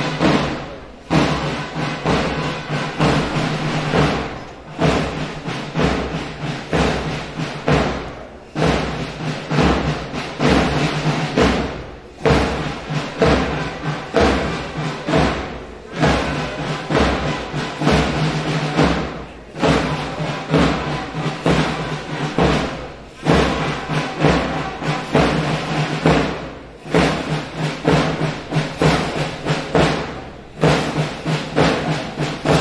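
Processional march music with a steady drum beat, its phrase repeating every few seconds.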